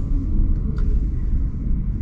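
Car engine and road noise, a low steady rumble, while driving slowly in traffic.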